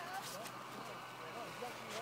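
Faint, distant voices calling over a steady low hum and light outdoor background noise.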